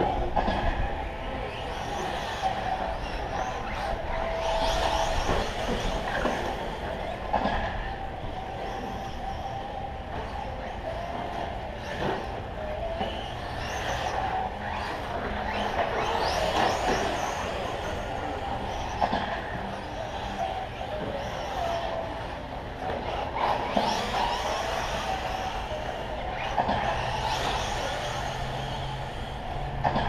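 Radio-controlled short course trucks racing on a dirt track: their motors whine up and down in pitch as they accelerate and brake, with a few sharp clacks from landings or impacts.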